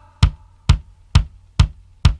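Recorded music in a break: a lone bass drum keeps a steady beat, four strokes about two a second, after the singer's held note has faded.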